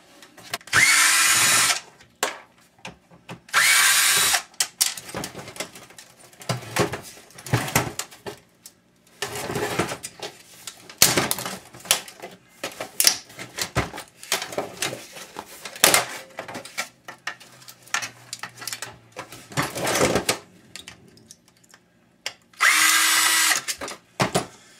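A power drill/driver running in three short bursts, about a second in, around four seconds and near the end, as screws are driven out of a flat screen monitor's casing. In between come many short clicks, knocks and clatter of plastic and metal parts being handled and pried apart.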